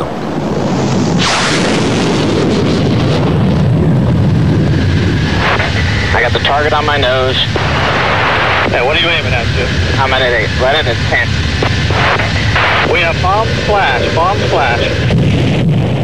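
Military jet aircraft noise, a loud steady roar with a heavy low rumble that swells up about a second in, with men's voices talking over it from about six seconds in.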